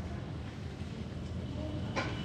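Metal drum brake parts being handled while a small spring is hooked onto the brake shoe: one sharp metallic click near the end, over a steady low background rumble.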